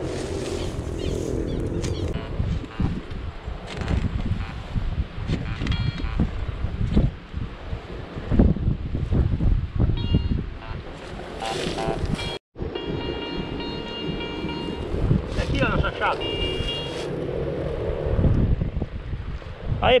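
Wind rumbling on the microphone while a small spade digs and scrapes into grassy soil, with a metal detector's steady high beeping tones in the later part.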